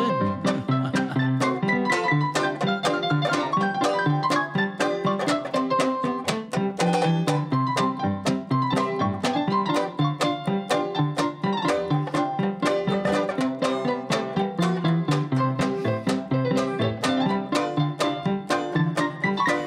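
Electronic keyboard in a piano voice playing an upbeat instrumental tune, with a banjo strumming chords to a steady beat alongside.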